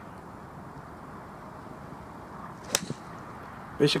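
A golf club swung through and striking a golf ball off a range mat: one sharp crack about three quarters of the way through, with a fainter click right after it.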